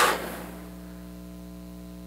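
The last word of speech rings out in a large hall's reverberation and fades over about half a second, leaving a steady electrical hum made of several fixed tones.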